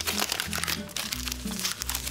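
Paper crinkling and tearing as a page is torn from a small booklet, a dense run of crackles over background music.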